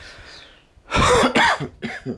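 A man's cough: one loud burst about a second in, followed by a couple of shorter, breathier bursts.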